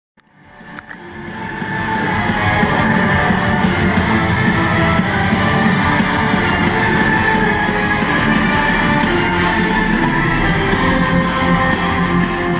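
Heavy metal track with electric guitars, bass and drums from the album mix in progress, fading in over the first two seconds and then playing steadily.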